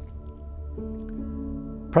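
Soft background music of held, sustained chords that shifts to a new chord just under a second in.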